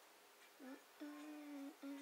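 A woman humming quietly: a short rising note about half a second in, then a long held note, and a second held note near the end that slides down in pitch.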